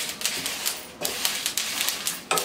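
Flax seeds dry-roasting in a pan with dried red chillies, crackling and popping in irregular sharp clicks as they are stirred.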